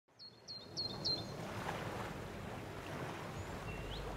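Outdoor ambience of steady background noise, with a small bird calling four short, high chirps in quick succession about half a second in and one rising note near the end.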